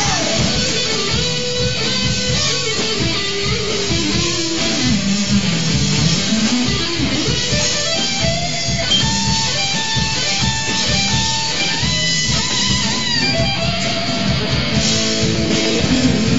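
Live rock band playing an instrumental passage: an electric guitar plays a lead line with sliding, bent notes over drums and bass.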